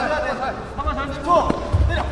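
Taekwondo fighters' bare feet thumping on the competition mat as they bounce and close in to exchange kicks, with short shouted calls over the thumps.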